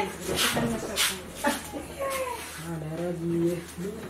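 People's voices in a small room, with one voice drawing out a steady, held sound in the second half.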